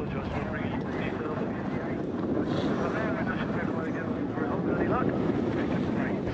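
A car engine running as the car drives and slides through a loose dirt course, with wind on the microphone and people talking in the background.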